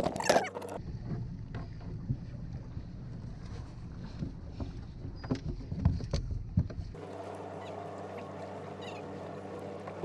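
Mercury 60 hp outboard on a skiff running at slow trolling speed with a steady drone. For the first seven seconds it is mixed with an uneven low rumble and scattered knocks. About seven seconds in the sound changes abruptly and the engine drone is heard clean and steady.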